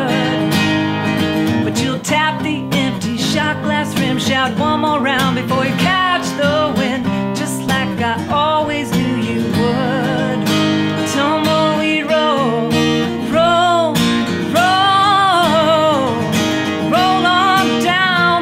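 A woman singing a country song while playing acoustic guitar, with several long held sung notes in the second half.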